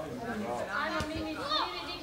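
Several children's voices calling out on a football pitch, high-pitched and overlapping.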